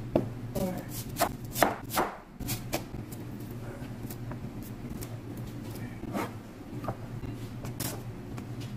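Knife strokes knocking on a plastic cutting board as onion is cut: several sharp, irregular knocks in the first few seconds, then softer rubbing as onion rings are separated by hand. A few cleaver chops on spring onion come near the end, over a steady low hum.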